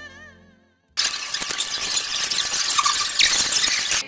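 Violin music fades out. After a moment's silence comes loud, rapid clicking and scraping of a plastic Rubik's cube being twisted close to the microphone.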